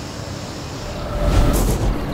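A low, steady rumble that swells in loudness about a second in, with a brief airy whoosh near the end.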